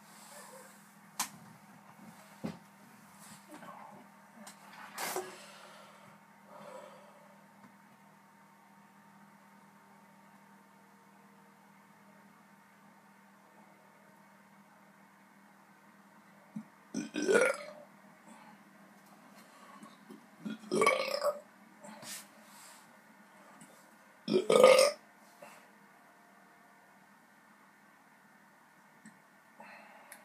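A man burping three times in the second half, each burp about a second long and the last the loudest: gas from a stomach full of milk. A few faint clicks come before them.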